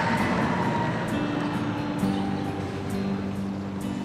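Soft background music with long held notes that come in about a second in, over a steady rumbling background noise that eases off a little.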